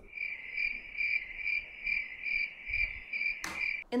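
Cricket chirping, a steady high trill pulsing about three times a second: the stock 'crickets' sound effect for an awkward silence. It cuts off abruptly just before speech resumes, with a brief burst of noise shortly before.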